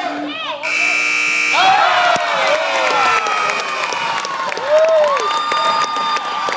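Gym scoreboard buzzer sounds for about a second, marking the end of the game as a last-second shot goes up. Spectators and players then cheer and shout the buzzer-beater.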